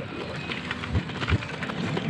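Wind buffeting the microphone of a camera on a moving bicycle, over the rolling noise of the bike on asphalt, with a few low thuds from gusts about a second in.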